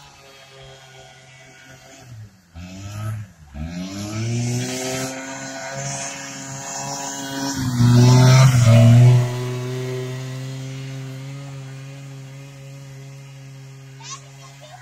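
Arctic Cat Kitty Cat children's snowmobile with its small two-stroke engine running. The engine's pitch dips and climbs a couple of times early on. It grows loud as the sled passes close about eight seconds in, then fades steadily as it rides away.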